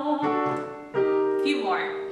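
Digital piano playing two chords, one about a quarter second in and a second about a second in, each left to ring. These are the keyboard's chords setting the new key between repetitions of a sung vocal warm-up.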